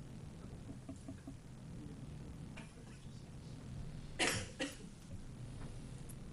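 A person coughing twice in quick succession about four seconds in, over the low hum of a meeting room.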